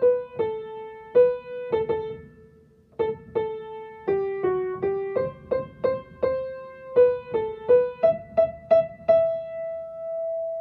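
Piano playing the soprano line of a women's duet as a single-note melody, in G major, one struck note at a time. There is a short rest about two and a half seconds in, and the phrase ends on a long held note.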